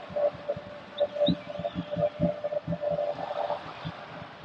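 Football stadium crowd noise with drums beating in the stands, irregular low thumps several times a second, under a held note that comes and goes.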